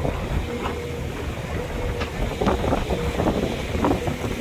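Wind rumbling on the microphone over the steady low hum of a farm tractor's engine.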